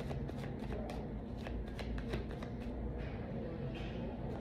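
A tarot deck being shuffled by hand: a run of quick, light card flicks that pauses about two and a half seconds in, over a steady low hum.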